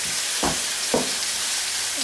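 Rabbit pieces and sofrito sizzling as they fry in a non-stick frying pan, with two short strokes of a wooden spatula against the pan about half a second and a second in.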